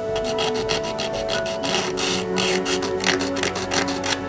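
Hobby knife blade scraping the edges of a 3D-printed resin part in many quick, short strokes, cleaning up the print.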